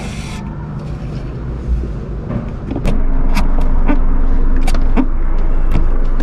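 A short aerosol spray hiss at the start, over a steady low vehicle rumble that grows louder about three seconds in, with scattered small clicks and rubbing.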